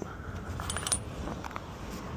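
Small metal parts or tools clinking on pavement: a quick cluster of light metallic clinks a little before a second in, with a couple of fainter ones after.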